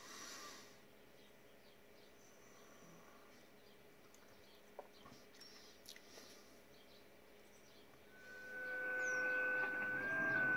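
Low background hiss with a few faint high chirps, then about eight seconds in, steady digital-mode tones start from the HF radio. These are JT65 signals on 20 metres: several single-pitch tones at once, which step in pitch.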